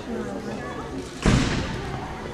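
People's voices, with one loud thump a little past a second in.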